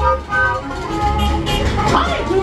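Upbeat cartoon soundtrack music with a steady bass beat, played over a theatre sound system.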